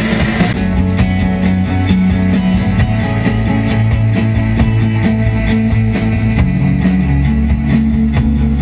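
Live rock band playing an instrumental passage on electric guitar, bass guitar and drum kit. About half a second in, a dense wash of high sound drops away, leaving a steady beat of drum strokes under a stepping bass line.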